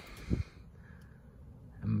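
Mostly quiet background in a pause between words, with one short low sound about a third of a second in, like a brief grunt, and a man's voice starting near the end.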